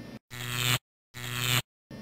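Electronic sci-fi sound effect: two separate half-second buzzing hums at a fixed pitch, each growing louder and then cutting off abruptly.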